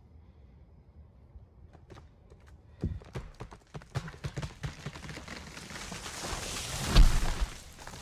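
Quick knocks and rustling, then a rushing noise that swells to a loud, deep thud about seven seconds in and fades. It is heard as something really big moving in the forest.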